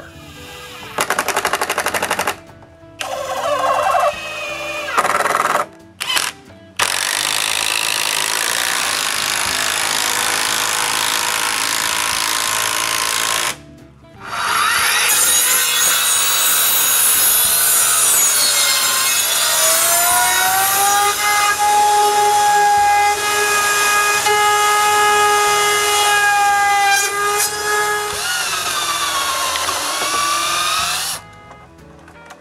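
A run of power tools working wooden planks. Short bursts of a cordless drill driving screws come first, then long runs of a Skilsaw circular saw with a steady motor whine that drops in pitch as it winds down near the end.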